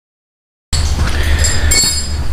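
Silence, then about two-thirds of a second in a loud steady low rumble with hiss starts abruptly: background noise on the handheld camera's microphone in a garage.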